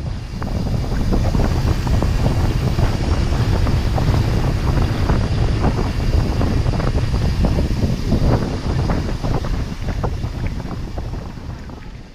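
Wind buffeting a GoPro Hero5 Black's microphone as a mountain bike rolls downhill at speed: a loud, rough low rumble with scattered ticks and rattles from the bike over the road and trail surface. It fades in at the start and eases off near the end.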